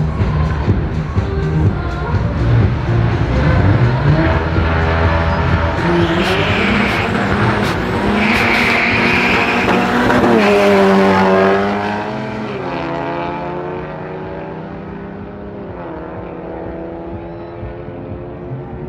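Two hatchbacks drag racing over a quarter mile: engines revving at the line, then accelerating hard through the gears, their pitch climbing in sweeps that drop at each shift. A high squeal comes twice, about six and eight seconds in, and the engines fade as the cars pull away down the strip.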